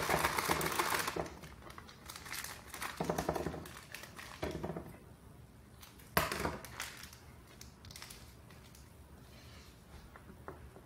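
Disposable plastic piping bag crinkling as it is handled and twisted, in a run of rustles. It is loudest in the first second, with a sharp crinkle about six seconds in, then quieter.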